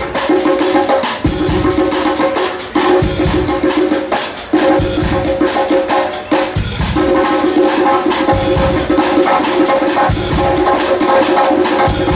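Live jazz-blues band playing an instrumental swing passage: drum kit with a busy, even cymbal rhythm and drum hits, over held chords and a walking bass, with hand percussion.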